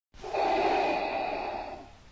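A single long, breathy exhale that starts almost at once, is strongest at first and fades out toward the end.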